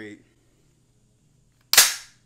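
A single sharp metallic clack near the end: the bolt carrier of an AR-15 pistol slamming home as the ambidextrous Radian Raptor charging handle is let go.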